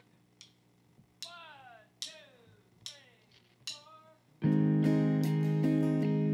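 Four evenly spaced count-off beats, each falling in pitch, then a country band comes in together about four and a half seconds in, led by strummed acoustic guitar with electric bass and drums.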